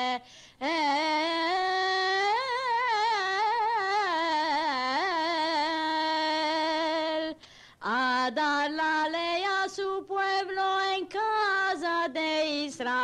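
A woman singing a Judeo-Spanish (Ladino) compla for Shabuot unaccompanied: a slow, heavily ornamented melody in the Ottoman style, with short breaks for breath near the start and about seven and a half seconds in. It is a recording of a native Judeo-Spanish-speaking woman from Turkey.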